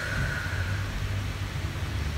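Steady background hum and hiss of room noise, with no speech; a faint thin tone fades out within the first second.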